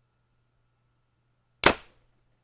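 Bowtech Carbon Zion compound bow, set at 70 pounds and without string silencers, firing a 350-grain arrow: one sharp snap about one and a half seconds in, dying away quickly.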